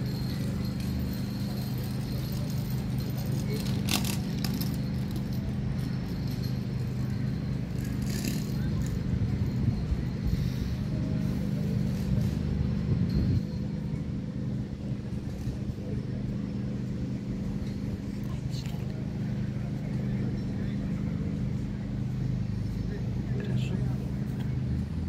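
A steady low mechanical hum, with people's voices in the background and a few light clicks.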